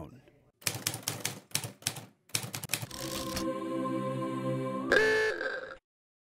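Manual typewriter keys clacking in a quick run of strikes for about two seconds, followed by a held musical tone that shifts and swells about five seconds in, then cuts off suddenly.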